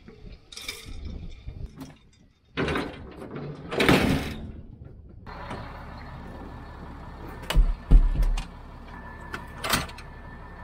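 Knocks and clatter of an aluminium laser level tripod and its hard plastic case being loaded onto a pickup truck's seat through the open door, with sharp thumps late on. A steady low hum, the truck's engine running, sets in about halfway through.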